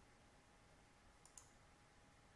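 Near silence: room tone, with two faint computer mouse clicks in quick succession a little over a second in.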